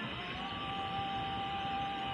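A steady tone sounding two pitches at once, held for about two seconds over a constant background hiss.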